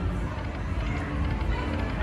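Steady casino-floor din: slot machines' electronic sounds over a murmur of crowd noise.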